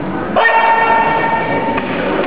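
A scoring-timer buzzer sounds once: a steady, horn-like tone that starts abruptly about half a second in and holds for about a second and a half. Behind it is the noise of a crowded sports hall.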